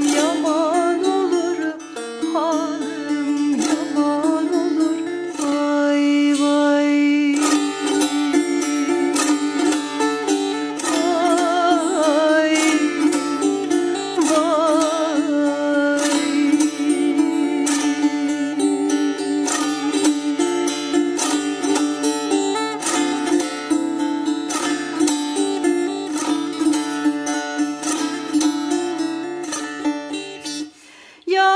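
Ruzba, a small long-necked Turkish lute, played in şelpe style with the fingers, in dense plucked strokes over a steady open-string drone. A woman sings a wavering folk melody with vibrato over it through roughly the first half.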